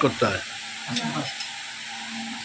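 Steady background hiss with a metal spoon lightly scraping and clinking on a plate, and faint murmured voices.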